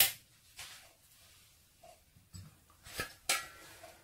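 Mostly quiet room tone, then about three seconds in a sharp knock and a short metallic clink as the stainless-steel lid of the cooking pot is handled.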